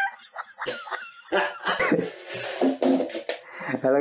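A man's voice making short, broken non-word vocal sounds that rise and fall in pitch, with a few sharp clicks between them.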